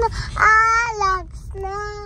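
A young child singing in a high voice: one long held note that falls at its end, then a shorter note, with no words. Under it runs the low rumble of the car moving on the road, heard from inside the cabin.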